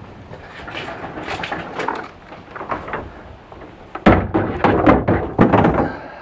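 A push-type drop spreader rattling as it rolls over concrete. About four seconds in come a string of loud thuds and clatters at a plastic wheeled garbage cart as its lid is thrown open and things are dumped in.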